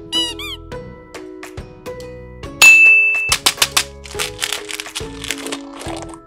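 Cartoon-style squeaks, a quick run of chirps in the first second, as a foam squishy toy is squeezed, over steady children's background music. A sudden loud hit with a short ringing tone comes a little before halfway, followed by quick clicks and a brief rustling noise.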